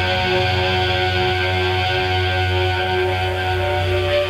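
Closing bars of a rock band's radio session recording: a dense, steady wall of sustained, droning tones over a low bass, with no breaks or beats standing out.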